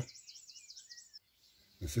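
Faint bird chirping: a rapid, wavering high-pitched trill for about the first second, then stopping.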